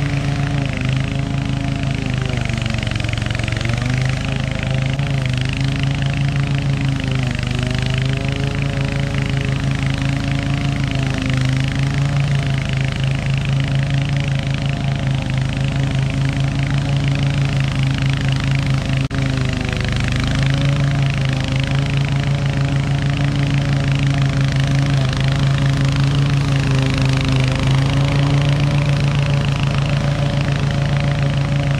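Toro TimeMaster 30 walk-behind mower engine running steadily under heavy load while cutting roughly three-foot grass. Its pitch sags and recovers a few seconds in and again about two-thirds of the way through, as the thick grass drags the engine down.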